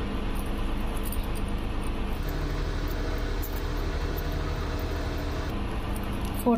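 Steady machine-like background hum and hiss with no speech. Its low rumble grows stronger about two seconds in and eases near the end.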